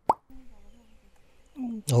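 A short rising 'bloop' sound effect at the very start, of the kind edited videos lay under a pop-up caption, then a quiet stretch before a man starts talking near the end.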